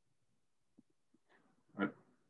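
Near silence over the call line, then one short voiced sound near the end, a brief vocal utterance picked up through a participant's microphone.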